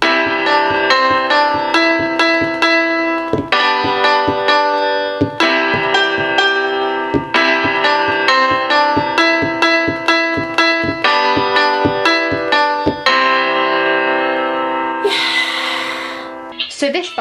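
Grand piano samples from the Specdrums app in a C major pack, set off by finger taps on the colored pad: a quick string of single notes and chords, several a second, each ringing on. Near the end there is a short hiss.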